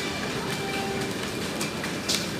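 Shopping trolley rattling steadily as it is pushed over a tiled floor.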